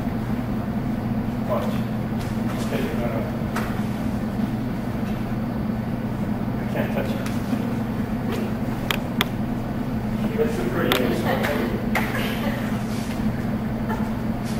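Steady low hum of room tone with faint, indistinct voices. There are a few light clicks about two-thirds of the way through.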